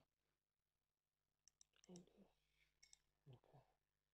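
Near silence, broken by small sharp clicks and two brief, soft two-part murmurs from a person's voice, about two seconds in and again near the end.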